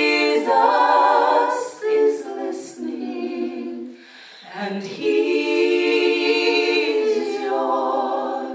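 Female gospel trio singing a cappella in harmony, several women's voices on held notes. A brief break comes about four seconds in, then a long sustained chord.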